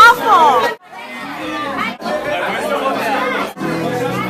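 Party chatter from a crowd of voices over background music in a room. A loud, raised voice opens it and is cut off abruptly just before a second in, and the background breaks off briefly twice more.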